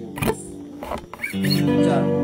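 Acoustic guitar strumming chords: a sharp strum just after the start, a brief thinner stretch, then a full chord ringing out again about a second and a half in.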